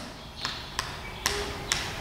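Chalk tapping against a blackboard as numbers are written: four sharp taps, about half a second apart.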